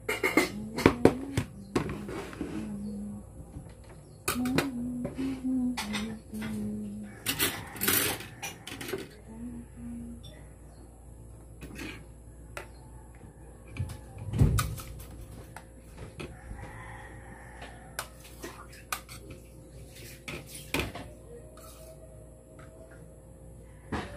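Fork and spoon clinking and scraping on ceramic plates as rice and stir-fried bitter gourd with egg are served and eaten. Short hummed notes run through the first half, and there is one low thump about fourteen seconds in.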